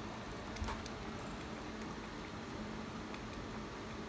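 Broth simmering in a stainless steel divided electric hot pot: a faint, steady bubbling hiss, with one faint click about half a second in.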